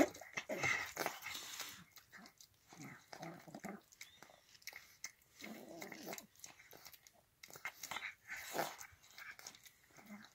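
An old cat eating wet cat food from a metal bowl noisily: wet smacking and chewing with irregular clicks, and breathy, snuffling bursts every second or two.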